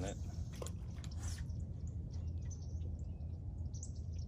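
A steady low hum, with a few faint bird chirps a couple of seconds in and some soft brief rustles.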